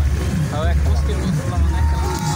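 Voices talking over a loud low rumble that comes and goes; near the end a steady high tone begins and holds.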